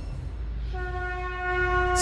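Dramatic news-intro sound effect: a low rumble, joined partway through by a sustained horn-like tone that swells louder.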